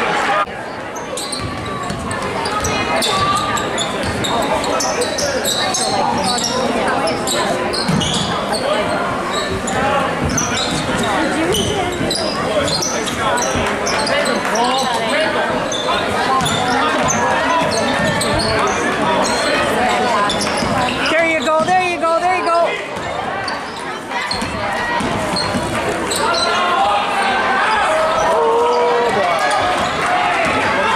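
Basketball game sounds in a gymnasium: a ball dribbling on the hardwood court and sneakers squeaking, over steady spectator chatter echoing in the hall.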